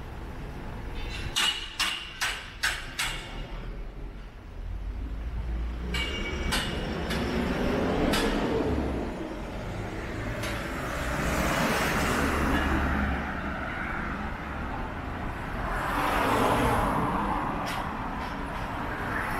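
Road traffic going by: motor vehicles pass one after another with a low engine rumble and swells of tyre noise, the biggest about eleven and sixteen seconds in. A quick run of sharp clicks or taps comes in the first few seconds.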